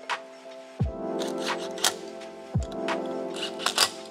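Background music: held chords with a few deep drum hits and sharp percussive clicks.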